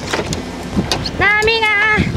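Wind and sea noise on an open boat deck with a few short clicks, then, from a little past halfway, one long, high, slightly wavering call.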